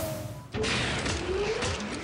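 Electronic sound effects from a DARTSLIVE soft-tip dart machine: the bull-hit effect fading out, then about half a second in a second synthesized effect starts with a rising sweep, the Low Ton award sound for a three-dart total of 100 or more.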